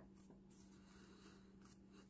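Near silence: room tone with a faint steady low hum and faint rustling of fingers pressing glued paper and cardboard layers together.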